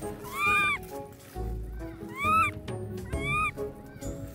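A baby monkey calling out three times, each a loud, high call about half a second long that rises and then falls in pitch, over background music.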